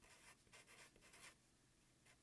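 Faint scratching of a felt-tip Sharpie marker writing on paper: a quick run of short strokes over the first second or so, then it stops.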